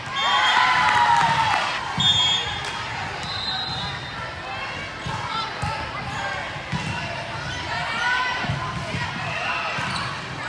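Indoor volleyball play on a hardwood gym floor: loud shouting voices in the first couple of seconds, a few short high squeaks, then repeated dull thuds of the volleyball on the floor and being struck.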